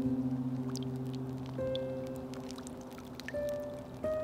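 Soft ambient background music: held notes fading slowly, with a new soft note about one and a half seconds in and another near the end.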